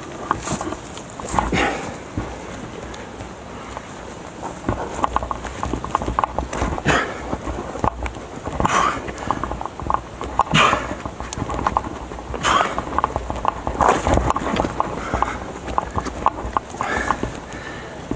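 A climber's hands and shoes scraping and tapping on the rock as he climbs back down, with irregular scuffs and clicks and several louder breaths or rubs every couple of seconds.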